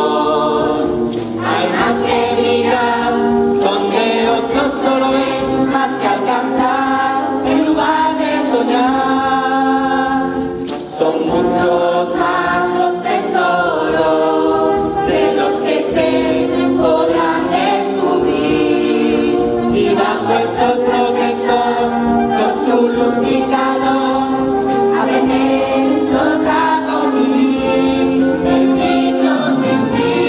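A large choir of children and young people singing together, holding chords in several parts, with a short dip in level about eleven seconds in.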